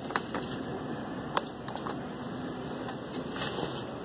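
Claw machine working a grab: scattered sharp mechanical clicks from the claw and gantry, with a faint motor hum for a moment past the middle, over a steady background noise.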